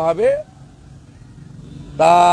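A man speaking into press microphones stops about half a second in, leaving a pause filled with faint, steady outdoor background noise with a low rumble.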